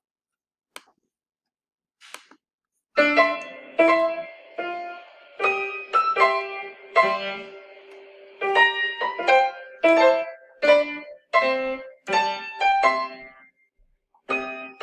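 Four-hand piano duet on a digital piano: a student and teacher playing a beginner staccato piece in C five-finger position, short detached notes. The playing starts about three seconds in, after a near-silent lead-in with a couple of faint clicks, and stops shortly before the end.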